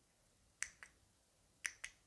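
Faint sharp clicks in two quick pairs, the pairs about a second apart.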